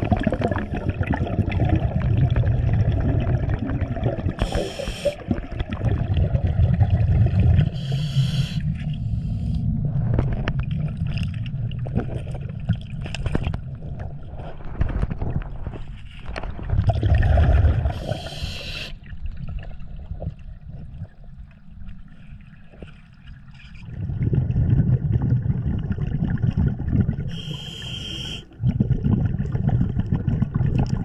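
Scuba regulator heard underwater through the camera housing: rumbling bursts of exhaust bubbles alternating with about four short hisses of inhalation. Between breaths come sharp clicks and scrapes from gloved hands working the riverbed.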